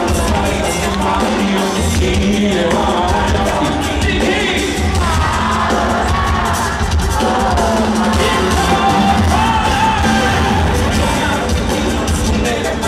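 Loud live pop song over a stadium sound system: a band with strong bass under a male lead vocal, heard from within the concert crowd.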